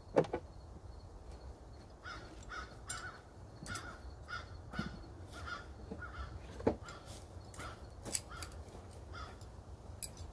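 A bird calling over and over in short calls, about one or two a second, with a few sharp clicks and knocks in between, the loudest just after the start and about two-thirds of the way through.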